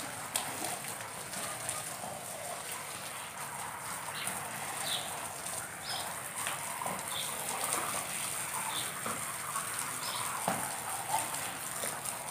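Water from a garden hose spraying and pattering steadily onto a rug laid on concrete, soaking it through before it is washed.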